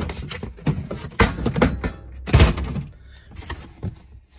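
Clear plastic storage tote and cardboard boxes being handled and shifted on a shelf: a run of thumps, scrapes and rattles, loudest about two and a half seconds in.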